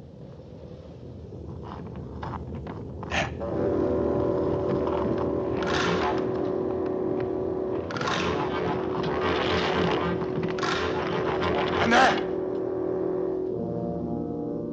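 Orchestral film score swelling up from quiet into a long held chord, cut through by a run of short, loud rushing bursts, the loudest near the end.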